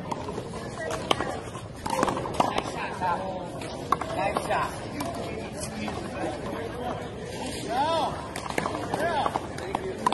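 People talking and chattering, with a few sharp smacks as the ball is punched and strikes the wall in play.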